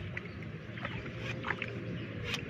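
A fish splashing at the surface of a lily-pad pond, a few short splashes, over a steady low hum.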